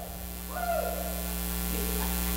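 Steady electrical mains hum from the microphone and sound system, with a faint distant voice calling out and falling in pitch about half a second in.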